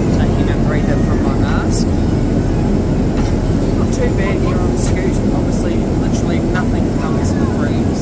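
Steady low roar of cabin noise inside a Boeing 787 airliner, the even rush of engines and air, with people's voices faintly talking under it.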